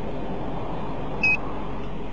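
Steady rushing hum inside a stopped police patrol car, with one short, high electronic beep a little over a second in.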